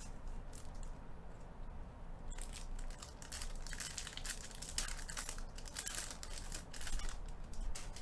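Foil trading-card pack being torn open and crinkled by hand, starting about two seconds in and running until just before the end.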